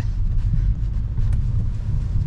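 Steady low rumble of an Opel Insignia's engine and tyres, heard inside the cabin while driving at low speed on a wet, lightly icy road.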